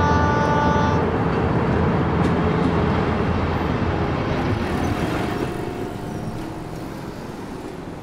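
Diesel locomotive horn sounding a steady chord that cuts off about a second in, followed by the continuous running rumble of a passenger train. Near the end it gives way to quieter road traffic noise.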